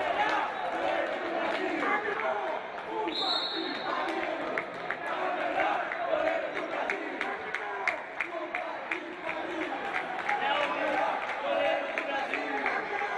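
Indoor handball game in an echoing sports hall: the handball bounces and thuds on the wooden court, shoes click, and indistinct shouts from players and the crowd carry on throughout. A short, high, steady referee's whistle sounds about three seconds in.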